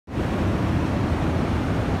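Water of a small rocky waterfall rushing and splashing down a stream cascade, a steady full rush with a heavy low end.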